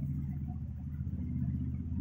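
A steady low background hum, with no other distinct sound.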